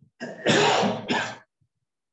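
A man clearing his throat loudly: one rough, partly voiced burst of about a second, in two parts.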